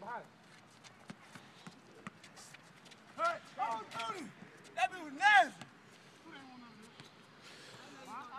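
Young men's voices calling out in short exclamations, twice, about three and five seconds in, over faint scattered thuds of a basketball bouncing and footsteps on concrete.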